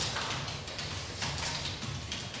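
Quiet room tone with a steady low hum and a few faint, brief clicks.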